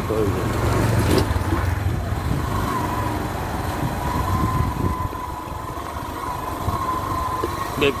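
A CNG auto-rickshaw's small engine running as it passes close by, loudest in the first two seconds and then fading. A faint steady high whine follows through the middle.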